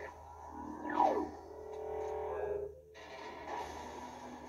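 Animated-movie trailer soundtrack playing through a TV's speakers: music and cartoon sound effects, with a loud falling whistle-like glide about a second in and a brief drop-out shortly before the end.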